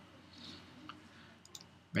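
A few faint, sharp clicks and a soft breath in a pause between spoken phrases.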